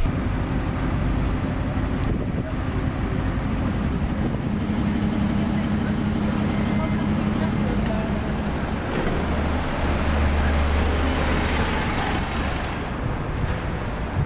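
City road traffic: a steady noise of vehicles on a busy street, with the low steady hum of engines running that shifts lower about ten seconds in.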